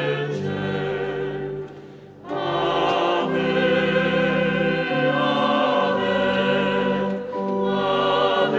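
A choir singing a slow hymn in long held chords, with a short break between phrases about two seconds in.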